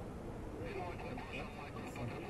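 Faint talk among the balloon's passengers over a steady low rumble.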